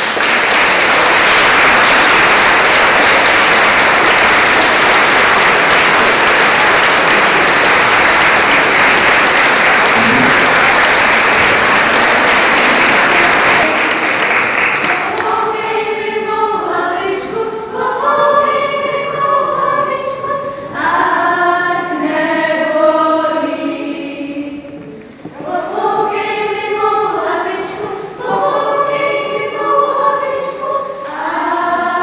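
Audience applauding loudly for about fourteen seconds, then a group of children singing together, with a short break in the song about ten seconds later.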